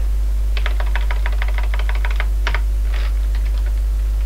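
Computer keyboard typing: a quick run of keystrokes, then a few slower single presses, as a line of code is typed and corrected. A steady low electrical hum runs underneath.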